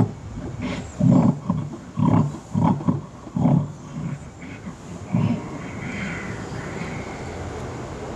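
Sound-track snoring of a sleeping giant animatronic, a loud, low, rasping voice heard in a run of short bursts from about one to four seconds in and once more near five seconds, then only steady background noise.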